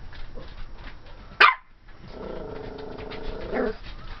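A 12-week-old Pomeranian puppy gives one sharp bark about a second and a half in. About half a second later comes a drawn-out growl of just under two seconds, which ends in a short yap.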